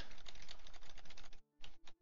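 Computer keyboard keys clicking in a fast, dense run for about a second and a half, then a gap and a few separate clicks.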